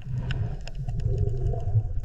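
A low, steady underwater rumble, with a few faint clicks and a faint wavering tone in the second half.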